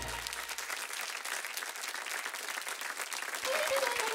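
Studio audience applauding, a dense, even run of many hands clapping. Music comes in near the end, under the applause.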